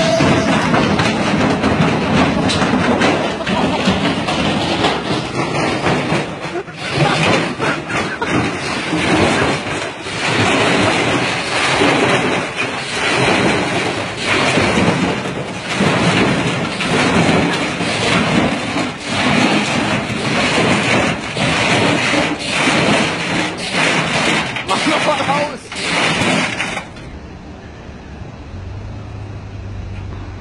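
A front-loading washing machine spins with a large stone in its drum. The stone hammers and rattles around inside in a steady loud clatter of repeated heavy bangs as the machine shakes itself apart. The clatter cuts off suddenly near the end, leaving a low hum.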